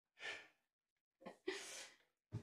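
Quiet breathy exhales from a person: a short one near the start and a longer, airier one near the end, as if from soft laughter.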